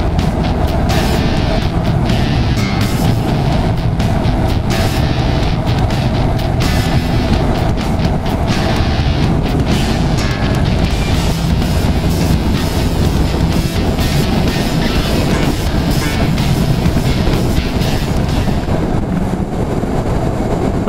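Honda NC750 motorcycle riding along at road speed: its parallel-twin engine and wind rush on the bike-mounted camera, with background music mixed over it.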